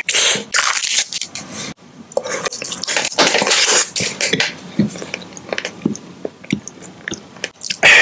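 Close-miked chewing of a chocolate-coated peanut pie snack: irregular bursts of mouth sounds, loudest in the first second and again around the middle, thinning to scattered small clicks and smacks in the last few seconds.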